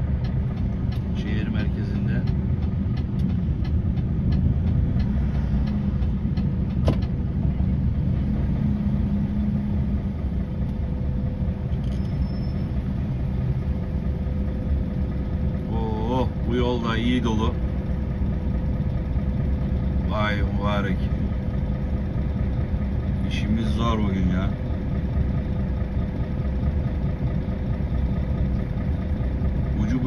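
Mercedes-Benz Actros concrete mixer truck's diesel engine running steadily, heard from inside the cab as the truck crawls and idles in stopped traffic. Short bits of a voice come three times in the second half.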